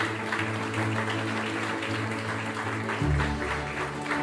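A group of people applauding, with background music playing underneath.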